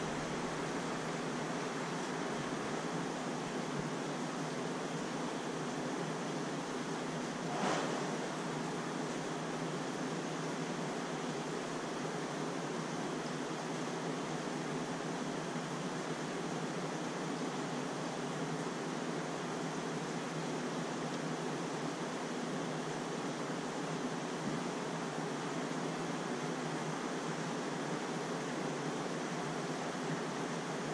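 Steady rushing noise with a low hum from a large aquarium's aeration equipment, air bubbling up through the tank. A brief faint swish about eight seconds in.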